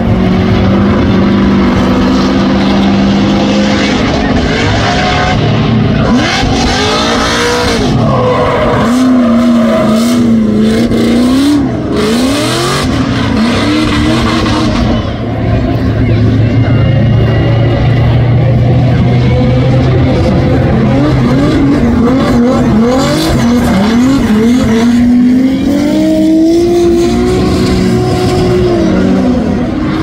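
Drift cars' engines revving hard, their pitch rising and falling over and over, with tyre squeal as the cars slide sideways through the corners on spinning rear wheels.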